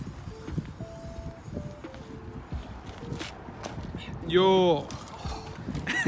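A person's drawn-out vocal exclamation, a shout or laugh, about four seconds in, over scattered low knocks and rumble from the bike and handling on the roadside.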